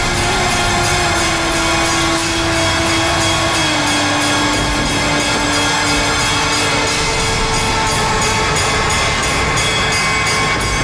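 Dramatic TV background score: long held notes that slide slowly downward, over a fast, steady percussive pulse.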